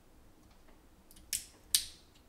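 Small slotted screwdriver prying at the plastic rim of an Apple AirTag's housing: a few faint ticks, then two sharp plastic clicks under half a second apart, a little over a second in.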